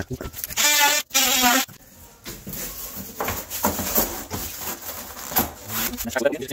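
A brief pitched vocal sound from a man, about a second long, near the start, followed by a few seconds of faint, irregular rustling and small knocks of handling.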